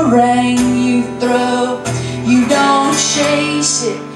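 Strummed acoustic guitar with a woman singing held, gliding notes.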